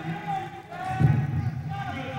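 A man talking into a handheld microphone; the speech is not transcribed.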